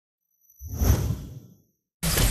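Whoosh sound effect: a swell of rushing noise that rises about half a second in, peaks, then fades away, with two thin high whistling tones riding over it.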